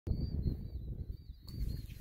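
Wind buffeting the microphone as a low, uneven rumble, with a thin, wavering high whistle over it that stops about a second and a half in.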